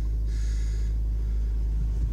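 Steady low rumble of a car's engine and road noise, heard from inside the cabin, with a short breathy hiss about half a second in.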